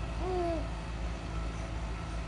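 A baby gives one short coo, slightly falling in pitch, about a quarter second in, over a steady low background rumble.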